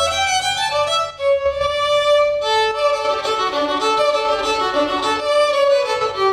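A violin played with the bow: a melody of held notes moving from pitch to pitch, with a brief break about a second in.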